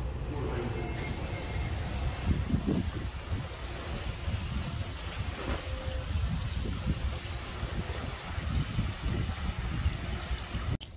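Wind buffeting the microphone in gusts over the steady splashing of a fountain's water jets falling into a pool.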